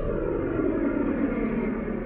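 A low, dull drone like a distant engine, drifting slightly down in pitch.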